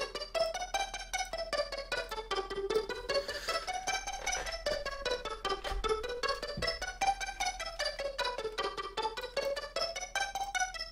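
Native Instruments Massive synth pluck patch playing a fast arpeggio, with short repeated notes stepping up and then back down in pitch in a repeating wave. The notes are fed through a delay set to about 27% feedback.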